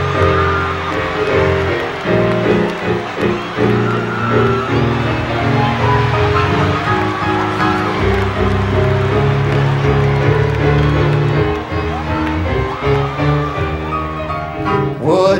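Keyboard music playing sustained church-style chords as an introduction to a gospel song.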